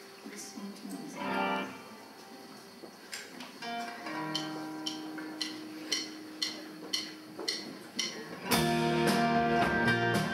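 Acoustic guitar played live: single plucked notes about twice a second, then about eight and a half seconds in, louder strummed chords come in with a deep low end as the song gets going.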